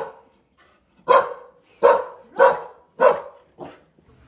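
Small curly-coated dog barking excitedly at its people coming back: after a short pause, four sharp barks about half a second apart, then a fainter fifth near the end.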